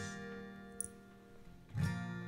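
Acoustic guitar music: a strummed chord rings and slowly fades, and another strum comes in near the end.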